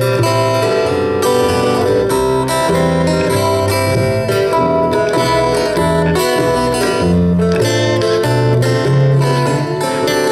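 Instrumental break of a live acoustic folk-blues trio: two acoustic guitars, one finger-picked and one strummed, over an upright double bass plucking a chugging line of low notes.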